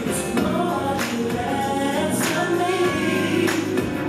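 A gospel song with singing plays throughout, loud and steady, with a few sharp percussive hits.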